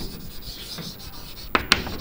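Chalk scratching across a chalkboard as a word is written, a dry, scratchy rubbing with two sharp ticks of the chalk about a second and a half in.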